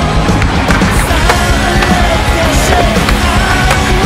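Skateboard sounds, wheels rolling and the board knocking on concrete and rails, with several sharp hits, mixed under loud rock music.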